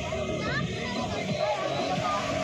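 Many children chattering and calling out together, with music playing underneath.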